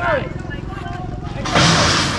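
Wind buffeting the microphone, with a loud gust about a second and a half in, over a steady low rumble.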